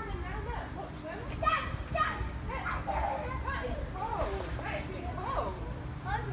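Indistinct chatter of children and adults in the background over a steady low rumble.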